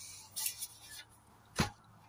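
Quiet handling noise: a short soft rustle, then a single sharp knock about a second and a half in.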